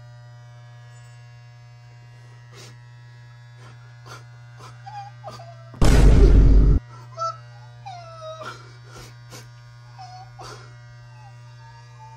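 Electric hair clippers running with a steady low hum. About six seconds in comes one much louder burst lasting about a second, as the clippers shear off a clump of hair.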